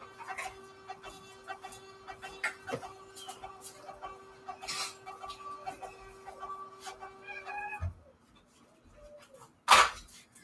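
A printer running a batch of labels: a steady whir with light rapid clicking that stops abruptly about eight seconds in with a soft thump. A single sharp clack follows just before the end.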